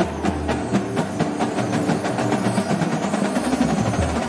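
Indoor percussion ensemble playing: a marching drumline of snares and tenors strikes a steady run of repeated notes over sustained pitched chords from the front ensemble's keyboards. A deep low tone drops out for most of the passage and comes back near the end.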